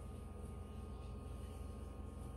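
Faint steady low hum and room noise, with no distinct sound events.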